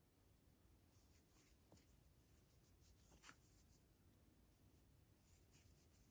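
Near silence, with faint scratchy rustles of a crochet hook drawing yarn through single crochet stitches; the most distinct one comes about three seconds in.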